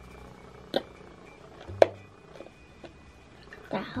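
Quiet room tone broken by two short, sharp clicks about a second apart, with a few fainter ticks after.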